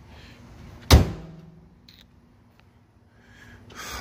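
The hood of a Nissan 350Z being slammed shut once, about a second in: a single sharp thunk with a short ring-out afterwards.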